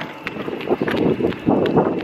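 Wheels rattling and rolling over pavement together with running footsteps: an uneven clatter of small knocks over a rushing noise.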